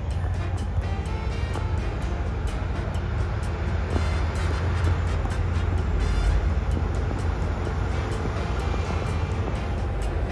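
Background music over a steady low rumble of city traffic.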